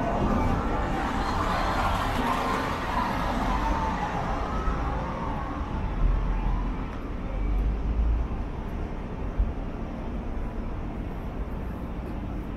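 Outdoor city street ambience: a steady hum of surrounding traffic and town noise, with a deeper rumble about six to eight seconds in.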